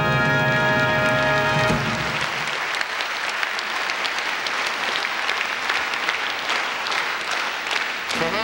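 A live band's final sustained chord ends about two seconds in, followed by audience applause that continues to the end.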